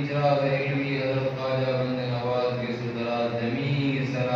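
A man's voice chanting a dua, a prayer of supplication, in long, drawn-out phrases.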